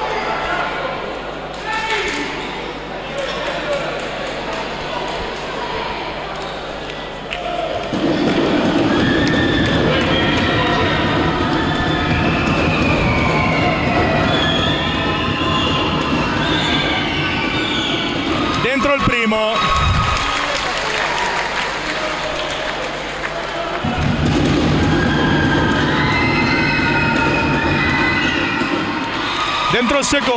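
Home crowd in a small gym during a pair of late-game free throws: voices and a ball bouncing on the hardwood floor. The crowd noise swells loud about eight seconds in, eases off around twenty seconds, and rises again about four seconds later.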